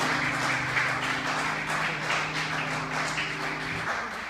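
Audience applauding, many hands clapping at once. A low steady hum sits underneath and cuts off shortly before the end.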